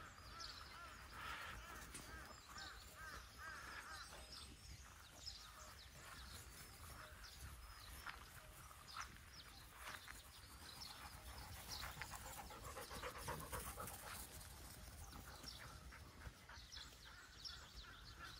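Faint panting of dogs running about on grass.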